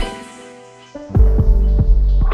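Electronic music: held synthesizer tones over deep throbbing bass pulses. A sharp swish at the start is followed by a quieter stretch, and the bass pulses and held tones come back about a second in.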